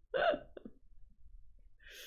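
A woman's brief laugh, a single short voiced burst about a quarter second in with a smaller one just after, then quiet room.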